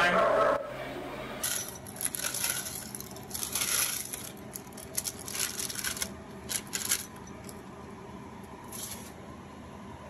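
A metal spoon clinking and scraping against a glass bowl as roasted potato chunks are tipped in and mixed with a mayonnaise dressing. It comes in a run of short bursts that thin out after about seven seconds, with one more near the end.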